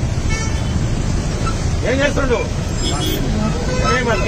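Steady low rumble of street traffic under a crowd's voices, with one voice calling out about halfway through.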